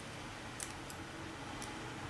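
Small screwdriver tightening a wire-clamp screw on a plastic bulb holder: three faint ticks, the loudest about half a second in, over a steady hiss.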